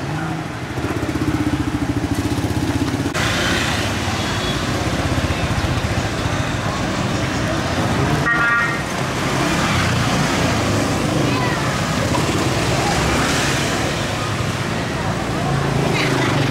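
Motor scooter and motorbike traffic passing close by, engines running steadily. A short horn toot comes about eight seconds in.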